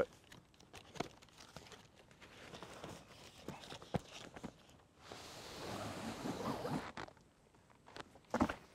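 A cardboard box being opened by hand: scattered light clicks and rustles of the flaps, then about two seconds of scraping as the canvas-bagged ground blind is slid out of the box.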